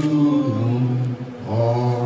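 A low voice chanting or singing in long, steady held notes, with a short break just past halfway before the next note.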